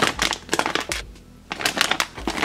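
Thin plastic sleeve of a flameless ration heater crinkling as it is handled, in two spells with a brief lull about a second in.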